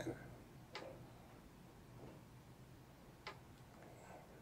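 Near silence with two faint, short clicks, about a second in and near the end: a fingertip tapping the phone's touchscreen while editing.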